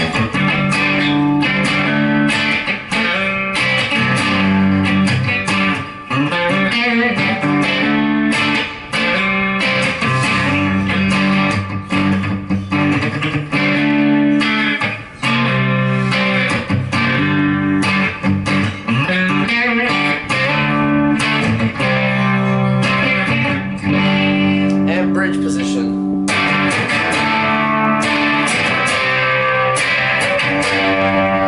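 Gibson Firebird Zero electric guitar played in sustained chords and picked lines through a Marshall DSL20 amp, with a full crunchy tone from the clean channel with its gain turned up. The playing runs continuously with a few short breaks.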